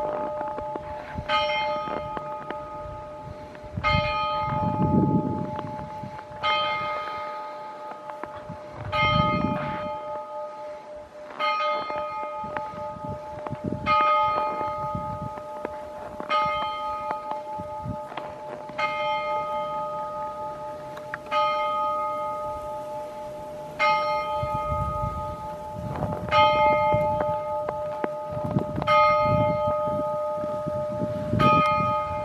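Church bell tolling: one bell struck evenly about every two and a half seconds, each stroke ringing on and fading before the next.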